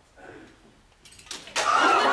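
A near-silent pause, then about a second and a half in a crowd suddenly bursts into loud laughter, cheering and chatter that carries on.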